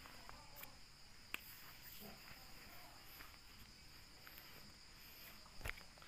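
Near silence with a faint, steady high trill of crickets in the background, and a couple of soft clicks, one about a second and a half in and one near the end.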